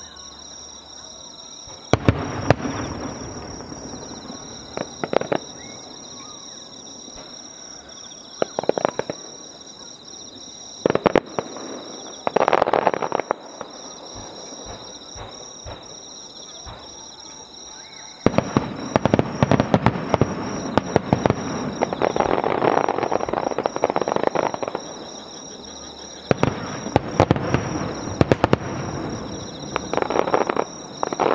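Aerial firework shells bursting one after another, each boom followed by rapid crackling. A dense, loudest barrage comes past the middle. Steady insect chirping runs underneath.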